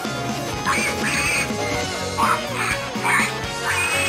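Cartoon background music with about six short, high comic squeals from an animated pig character.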